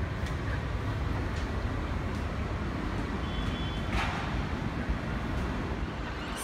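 Steady low outdoor rumble of wind on the microphone and distant city traffic below, with a brief gust about four seconds in.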